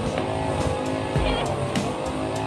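A petrol grass-cutting machine (brush cutter) engine running steadily under background music.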